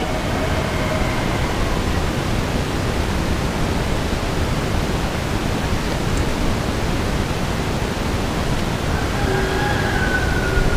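Steady, even rushing outdoor noise, with roosters crowing faintly near the end.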